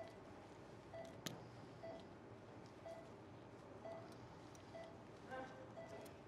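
Faint short electronic beeps, one tone about once a second, typical of an operating-room patient monitor sounding each pulse beat. A single sharp click comes about a second in.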